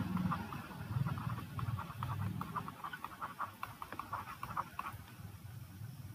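Faint, irregular ticking and scratching of a stylus writing a word on a pen tablet, many small taps in quick succession, over a low hum.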